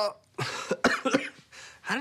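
A man coughing and clearing his throat in several short, rough bursts; his throat is strained from a gravelly voice.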